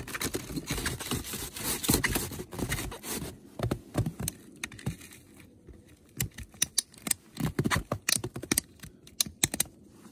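Plastic ratchet straps of Faber S-Line snowshoe bindings being tightened by hand, giving runs of sharp clicks. For the first few seconds the clicking is mixed with shuffling and crunching in the snow, then it becomes sparser, separate clicks.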